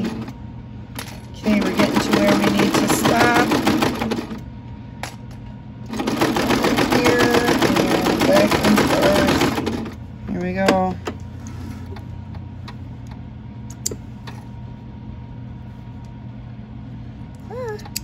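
Singer Starlet sewing machine stitching a seam through layered fleece, run slowly in two stretches of about three to four seconds each with a pause between.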